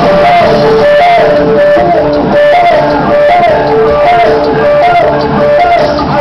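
Loud live electronic rock music: a repeating synthesizer riff that steps up and down in pitch, coming round about every 0.8 s, over a full band.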